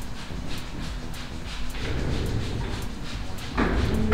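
Background music with a steady high ticking beat, about two ticks a second, over low room noise; a louder burst of sound comes in near the end.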